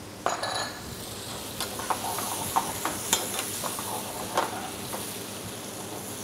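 Grouper pieces, cherry tomatoes and tomato passata sizzling steadily in a metal frying pan over a gas flame, with scattered clicks and scrapes of a metal utensil stirring against the pan.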